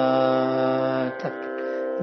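A man singing a line of a Carnatic krithi in the lesson, holding one long steady vowel on the word 'Ramana'. He breaks off a little after a second in with a short falling syllable, while a steady drone carries on beneath.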